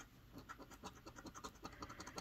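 Faint coin scraping the coating off a paper scratch-off lottery ticket, in quick repeated strokes about five a second.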